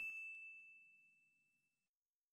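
The fading ring of a ding sound effect: one high, bell-like tone dying away faint over about two seconds.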